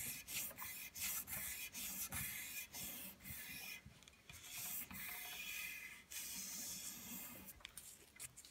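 Faint scraping of a folded strip of aluminum oxide sandpaper rubbed by hand in short back-and-forth strokes along the brake track of a carbon clincher rim, about two strokes a second, pausing briefly twice. It is sanding off built-up brake pad material, the gummed-up blue brake dust that leaves ridges on the track.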